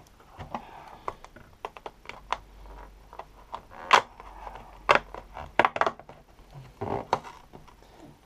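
Scattered small clicks and light rustling of plastic LEGO pieces and advent-calendar packaging being handled, with the sharpest clicks about four and five seconds in.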